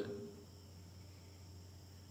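Quiet room tone: a steady low hum under a faint, steady high-pitched whine, with the tail of a man's voice fading out in the first half second.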